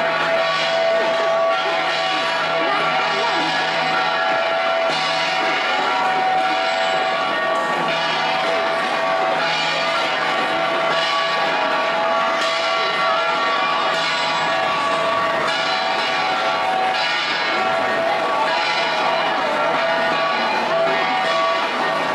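Gangsa, flat bronze gongs, struck over and over in a steady dance rhythm, their ringing tones sustained throughout, with crowd chatter underneath.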